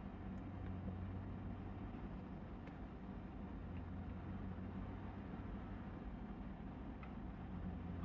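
Low steady background hum, with a few faint clicks as small resin prints are set down and turned over on a UV curing station's plate.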